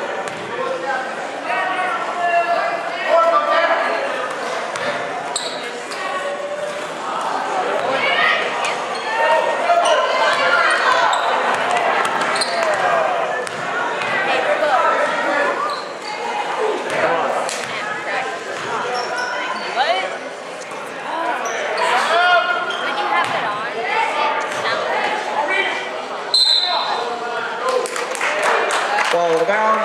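Basketball game in a gymnasium: the ball bouncing on the hardwood court amid continual shouts and chatter from players and spectators, echoing in the hall.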